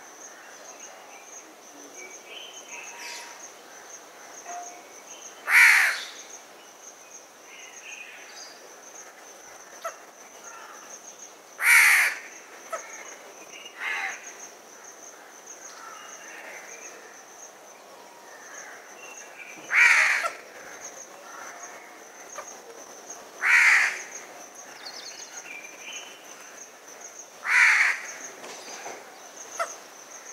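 House crow (Corvus splendens) giving single loud caws, six in all, spaced four to eight seconds apart, one of them weaker, with fainter calls in between and a steady high trill underneath.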